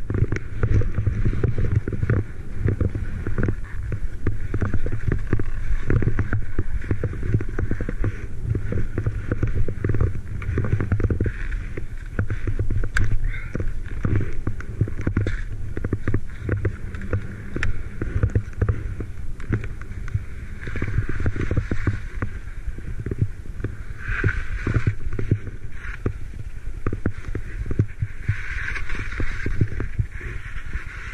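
Wind buffeting an action camera's microphone in a steady, irregular low rumble, with skis scraping and sliding over snow.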